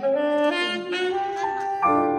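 Saxophone solo in a jazz big band: a line of held notes moving up and down in pitch, with the band's brass behind it.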